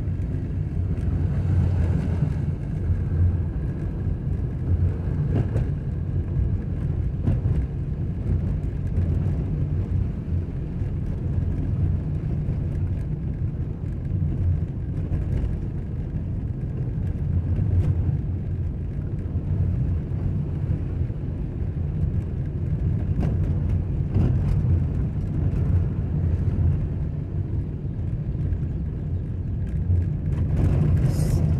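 A car driving along an unpaved dirt road, heard from inside the cabin. The engine and tyres make a steady low rumble on the loose surface, with scattered small ticks.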